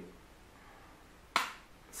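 A single sharp plastic click about two-thirds of the way in, as a plastic folding compact mirror is snapped open, against faint room tone.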